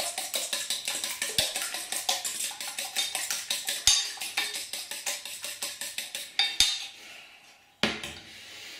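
Eggs being beaten with a utensil in a stainless steel bowl: rapid, even clinking strokes on the metal, about eight a second. They stop shortly before the end, and a single knock follows.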